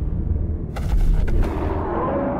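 Film sound effects of a giant horned monster charging across sand: a deep, continuous rumble with a quick cluster of heavy crunching impacts about a second in.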